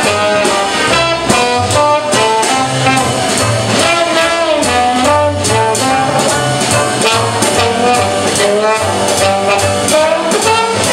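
Traditional New Orleans jazz band playing live: trumpet, trombone and clarinet over string bass, banjo and drums, the bass stepping along under a steady beat. Partway through, the trumpet and clarinet drop out and the trombone carries on.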